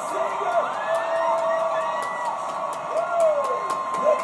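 A woman singing long held notes that slide between pitches, over a regular beat of sharp claps or clicks.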